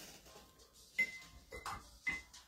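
Two light clinks of a hard object, about half a second apart, the first the louder, each with a brief high ring.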